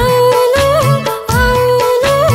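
Nepali pop song music: a held melody line with quick ornamental bends, over a drum beat whose low strokes drop in pitch.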